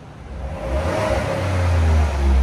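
Ford F-150's 3.5-litre EcoBoost twin-turbo V6 being revved through its stock exhaust. The deep exhaust note builds from about half a second in and gets steadily louder as the revs climb, peaking at the end.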